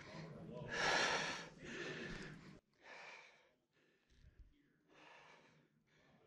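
A person's breathing close to the microphone, a breath about every second or so, growing fainter.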